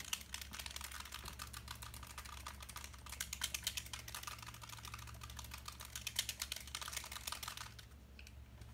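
A dropper bottle of Army Painter Speedpaint being shaken hard, giving a rapid, continuous clicking rattle of the paint and its contents. The rattle stops just before the end, once the paint is mixed ready to use.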